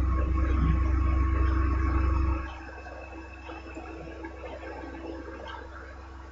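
Steady low electrical hum and faint hiss of a narration microphone, with no other sound. The low hum drops away sharply a little over two seconds in, leaving only a quieter hiss and a faint steady tone.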